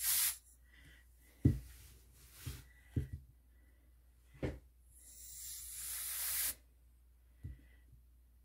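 Canned air hissing in a short burst at the start and a longer burst of about two seconds past the middle, blowing wet alcohol ink across a resin-coated board. Several soft knocks in between, the loudest about a second and a half in.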